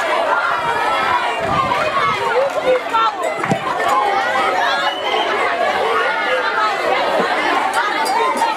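Crowd chatter: many young voices talking and calling out at once.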